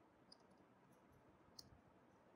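Faint computer keyboard keystrokes: a few scattered key clicks, the clearest about one and a half seconds in, over near silence.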